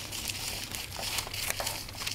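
Scissors cutting through a large sheet of pattern paper: a run of sharp snips over a continuous crinkling rustle of the paper as the blades advance along the line.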